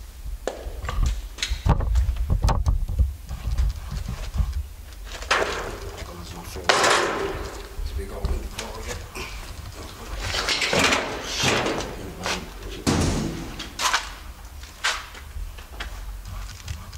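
Footsteps crunching and scuffing over debris, with scattered knocks and clicks and a low rumble from camera handling, and a few louder scraping noises about five to seven seconds in and again around ten to thirteen seconds.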